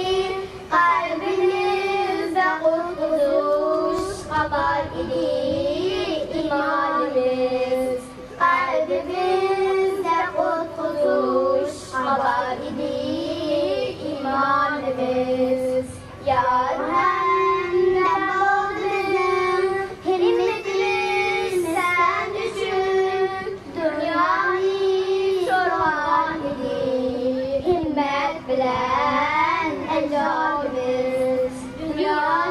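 Three girls singing a slow song together into handheld microphones, in phrases with long held notes.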